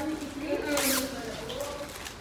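A brief rasping rip of plastic packaging being handled, about a second in, with voices in the room.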